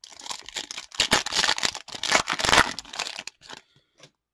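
Foil wrapper of an Upper Deck hockey card pack being torn open and crinkled: a dense crackling rustle, loudest in the middle, that stops about three and a half seconds in.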